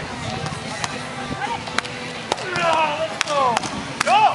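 A beach volleyball rally: several sharp smacks of hands striking the ball, then players shouting in the last second and a half.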